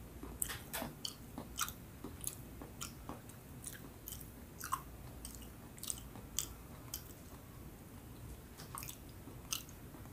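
Close-miked mouth chewing soft kakanin coated in grated coconut: irregular sharp mouth clicks, roughly one or two a second, with a short lull about three-quarters of the way through.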